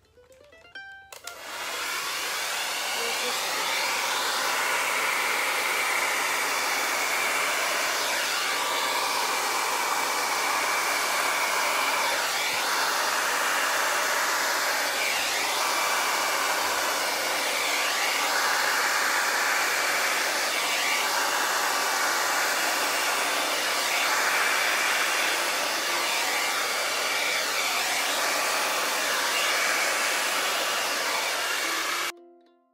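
Handheld hair dryer switched on about a second in and then running steadily: a loud rush of air with a thin high whine, blowing wet acrylic paint across a canvas. Its tone swoops down and back every few seconds as the dryer is moved over the paint.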